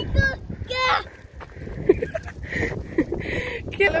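A toddler's short, high-pitched vocal calls, mostly in the first second, over a steady low rumble of wind on the microphone.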